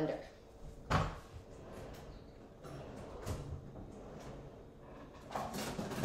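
A kitchen cupboard being opened and shut while someone rummages for an appliance. There is one sharp knock about a second in, then softer clatter and knocks.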